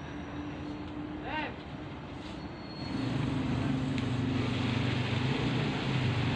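A motor engine running steadily, starting about three seconds in as a low, even hum over a steady background hiss.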